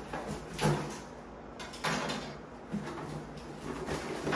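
A cardboard shipping box being opened: packing tape slit with a knife and pulled away, with cardboard scraping, in a few short rasping rips, the loudest about half a second in.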